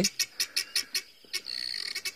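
Guineafowl alarm calling: a rapid, rhythmic run of harsh notes, several a second, with a brief steadier high note near the end.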